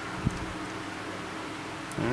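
Steady faint room hiss with one brief light knock about a quarter of a second in, as the metal fittings of a coiled air hose are handled.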